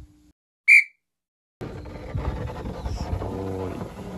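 A single short, loud, high whistle-like tone with overtones, sounding alone in a silent gap: an edited-in sound effect. About a second and a half in, room sound of the café interior comes in.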